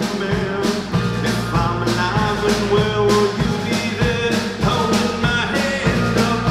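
Live rock band playing: electric guitars, bass guitar and a drum kit, with a steady drum beat.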